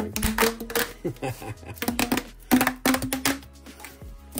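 Corrugated plastic exhaust hose being compressed by hand, its ribs folding into one another with a rapid, irregular run of clicks and creaks.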